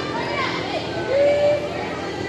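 Young people's voices calling out and chattering in a gymnasium during a volleyball match, with one drawn-out shout a little after a second in.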